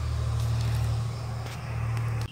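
A steady low hum with a faint hiss over it.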